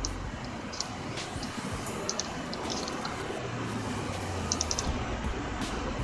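Steady background hiss and low hum, with a few faint, quick clicks from computer mouse and keyboard use now and then, including a short run of three or four clicks near the end.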